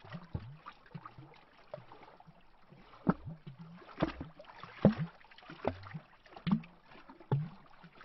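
Small lake waves lapping against a tree trunk at the waterline, making irregular hollow glubs and little splashes. The glubs are small and sparse at first and come stronger, about one a second, from about three seconds in.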